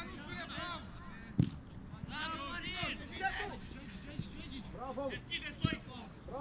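Voices shouting and calling out across a football pitch during play, with sharp thuds of a football being kicked: the loudest about a second and a half in, another near the end.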